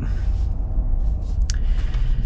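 Low, steady cabin rumble from the Ineos Grenadier rolling slowly, with its 3.0-litre BMW turbo inline-six and the tyres running underneath. A single short click comes about one and a half seconds in.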